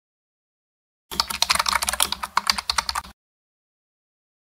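A rapid run of computer-keyboard typing clicks, starting about a second in and lasting about two seconds before cutting off suddenly.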